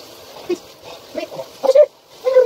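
A young man's short strained gasps and yelps from the shock of cold shower water, coming faster and louder toward the end.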